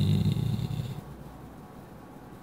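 A man's drawn-out, humming voice through a microphone and PA, trailing off about a second in, followed by faint hall room tone.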